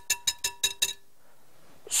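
Wire balloon whisk beating stiffly whipped cream in a glass bowl: quick, even clinks of the wires against the glass, about eight a second, with a faint ring from the bowl. It stops about halfway through.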